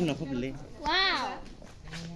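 Voices of people talking, with one high-pitched vocal cry that rises and falls about a second in.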